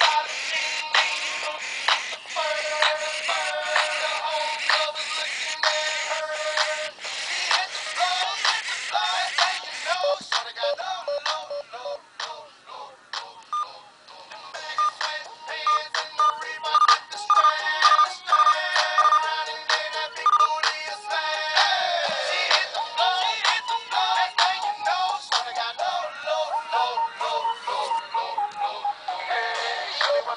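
A hip-hop song playing through the small built-in speaker of an i-Dog Amp'd toy. It sounds thin and tinny, with no bass. It drops quieter for a moment midway, and a falling pitch sweep comes about two-thirds of the way through.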